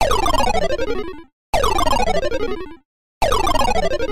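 A comic sound effect played three times in a row, each time a fluttering tone that slides steeply downward in pitch over about a second and then stops.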